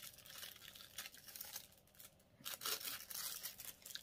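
Thin clear plastic wrapping crinkling and rustling as it is pulled off a pair of sunglasses. The crinkling is busiest in the first two seconds, and a few brief crinkles follow.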